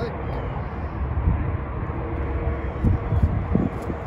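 Steady low rumbling background noise outdoors, with a few soft thumps in the middle and near the end.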